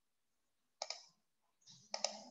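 Faint clicks: a single click just under a second in, then a quick run of several clicks near the end, with near silence between.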